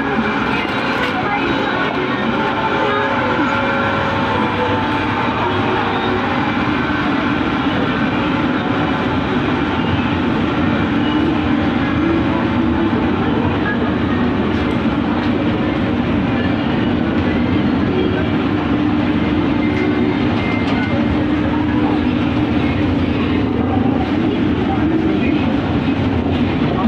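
Mall escalator running with a steady mechanical hum and rumble, with shoppers' voices mixed in.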